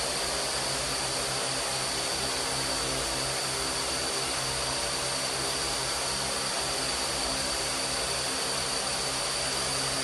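Multirotor drone's propellers running steadily, a continuous noisy whirr with a high steady whine.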